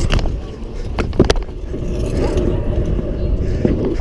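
Stunt scooter wheels rolling on skatepark concrete, a steady low rumble, with a couple of sharp clacks about a second in as the scooter lands.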